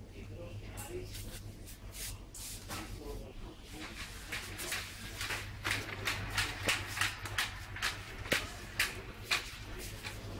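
Indistinct background voices in a shop over a steady low hum, with a quick run of sharp clicks and knocks through the second half.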